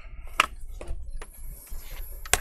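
Metal pry tool clicking and scraping in the seam of a laptop's plastic bottom cover: a few sharp clicks, the loudest about half a second in, then a short high scrape near the end. The cover is not coming free because a hidden screw still holds it.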